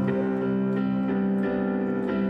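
Digital piano playing a slow, sustained chordal accompaniment, with new notes struck a little over twice a second.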